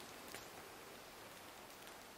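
Near silence: a faint steady hiss of outdoor background noise, with one faint tick about a third of a second in.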